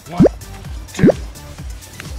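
Two quick rising "bloop" sound effects about a second apart, over background music with a steady beat.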